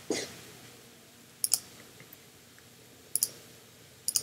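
Computer mouse clicking: a single click right at the start, then two quick double-clicks, about a second and a half in and about three seconds in.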